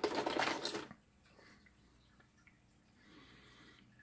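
Rustling, scraping handling noise on a workbench for about the first second, then near silence.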